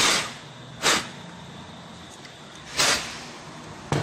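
Three short, hard puffs of breath, two close together at the start and a third about two seconds later, with a brief click near the end.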